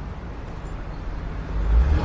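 A car pulling away, its low engine rumble swelling toward the end.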